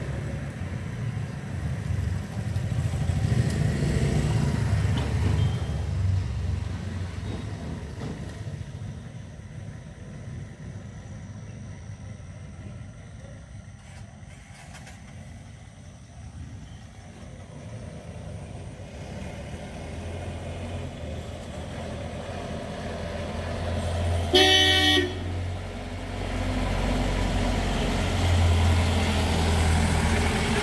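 Passing road vehicles: a motorcycle engine runs in the first few seconds, then a bus engine grows louder as the bus approaches. A horn honks once, for about a second, a few seconds before the end.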